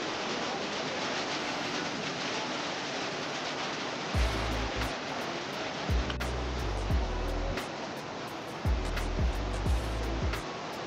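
Steady rain falling on a corrugated metal porch roof and wet ground. About four seconds in, background music with a deep, pulsing beat comes in over it.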